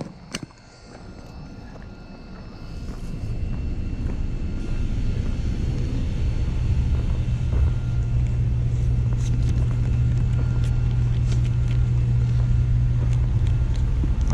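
A steady low mechanical hum, like an idling engine or a running motor, growing louder over the first few seconds and then holding steady. A sharp click comes just after the start, and faint footsteps crunch on gravel.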